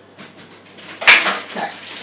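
A sharp metallic clatter of kitchenware against the countertop about a second in, followed by the crackle of baking paper being handled.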